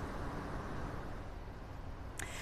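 Steady outdoor street ambience: an even, low background noise with no distinct events.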